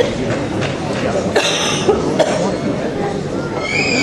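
Murmur of many voices talking at once, with a cough about a second and a half in and a higher-pitched voice near the end.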